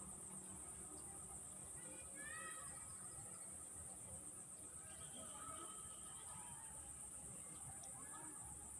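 Faint, steady high-pitched insect chorus, with a few short rising bird chirps about two seconds in and a few more calls around five to six seconds.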